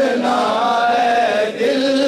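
A man singing a naat, an Urdu devotional song in praise of the Prophet, unaccompanied in a chanting style with long held notes that waver and slide between pitches.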